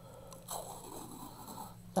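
Wide washi tape being pulled off its roll, a rough peeling rustle lasting a little over a second, then a short sharp click near the end.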